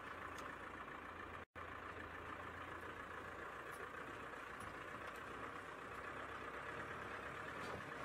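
Engine of an open safari vehicle running as it drives along a dirt track, a low, steady engine-and-road noise heard from inside the vehicle. The sound drops out for an instant about a second and a half in.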